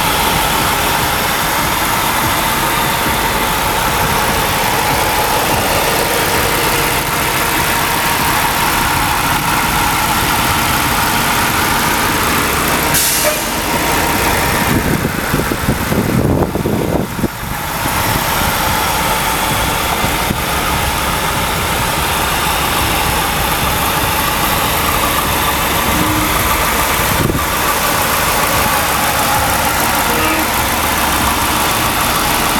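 2001 Lincoln Town Car's 4.6-litre V8 idling steadily under the open hood. About halfway through there is a click and a few seconds of rustling.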